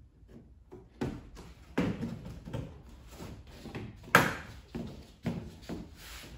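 Plastic engine-bay cover over the brake fluid reservoir being fitted back into place by hand: a series of light plastic clicks and knocks, the loudest about four seconds in.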